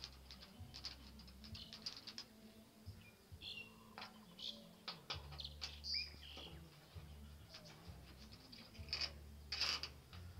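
Small metallic clicks and scrapes of a bolt being tightened on a solar panel's aluminium mid clamp on its mounting rail, first by hand and then with a long-shafted hand tool. The clicks are irregular, with a louder cluster near the end.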